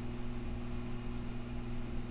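A steady low hum over faint hiss: background room tone with no clear event.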